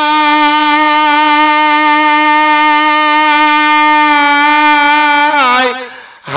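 A man singing unaccompanied in the style of a Bengali Bhawaiya folk song. He holds one long, steady note that bends down in pitch and fades away near the end.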